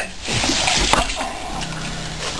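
A wet rush of birth fluid lasting about a second as a newborn animal, still in its birth sac, slides out onto straw. There is a short knock near the middle of the rush.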